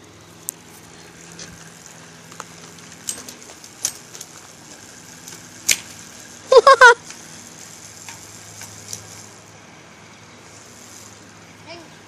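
Bicycle wheel spun by hand with pine cones wedged in its spokes, giving a few scattered sharp clicks and ticks. A little past halfway a child gives a short high exclamation in three quick bursts, the loudest sound here.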